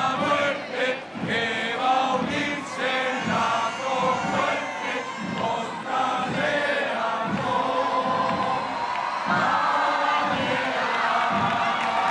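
Massed men's voices of Spanish Legion legionnaires singing together in unison over a large street crowd. About nine seconds in, the crowd grows louder.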